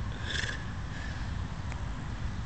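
Low, uneven wind rumble on the microphone, with a brief soft hiss about half a second in and a faint tick near the end.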